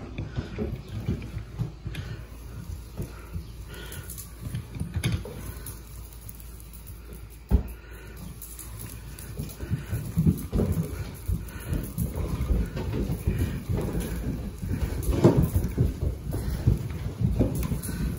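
A hand-cranked Revenge fly reel being wound in, pulling a fly-covered sticky ribbon onto its spool: irregular rattling and crackling, with one sharp knock about halfway through.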